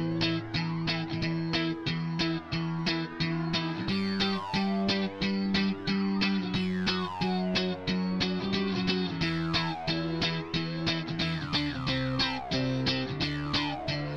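Instrumental passage of a rock song: an electric guitar through effects picking a quick repeated pattern, about four notes a second, over long held low bass notes.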